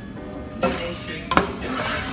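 A utensil knocking against a frying pan twice while mixing seasoning into food, the second knock louder.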